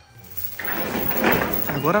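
A steel chain rattling and scraping as it is gathered up off the floor and pulled along, starting about half a second in, with a spoken word near the end.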